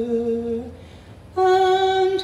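A woman singing long held notes into a microphone, with a short break a little over half a second in before the next note starts.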